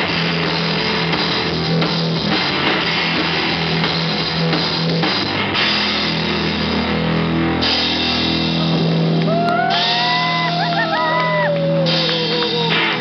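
Live rock band playing loudly: drum kit with cymbals, guitar and a held bass note. In the last few seconds a sliding high note bends and then falls in pitch.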